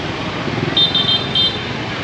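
Street traffic: a steady din of motorbike and car engines, with a quick run of short, high-pitched horn beeps about a second in.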